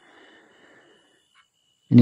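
A faint breath drawn in by the speaking man, lasting about a second, in a pause between sentences. Speech resumes near the end.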